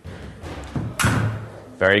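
Sabre fencers' shoes thudding and stamping on a wooden floor during a lunging attack, with the loudest thud about a second in.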